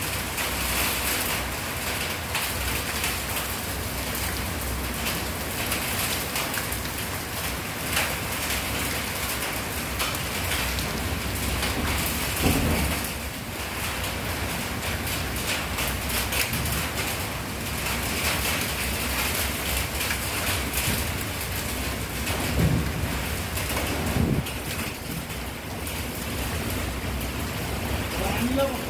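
Heavy rain falling steadily in a windstorm, a continuous downpour that swells briefly louder a few times.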